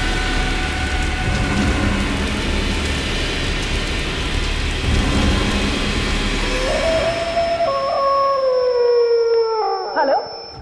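Dramatised sound of a blazing fire: a dense, rumbling roar with a steady droning note beneath it. From about two-thirds of the way in, a long howl slides slowly down in pitch and breaks off at the end.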